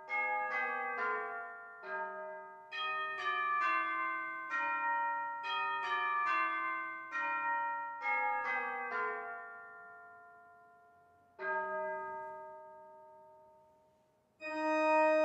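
Bell chimes playing a slow tune of single struck notes, each ringing on and fading into the next. The tune stops about nine seconds in, then one last note is struck a couple of seconds later and left to ring away.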